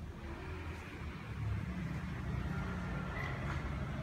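Low, steady rumble of city road traffic heard from a little way off, growing slightly louder.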